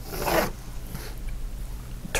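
Pencil drawn along a plastic ruler on paper, ruling a straight line: one short stroke lasting about half a second and growing louder, then only faint traces.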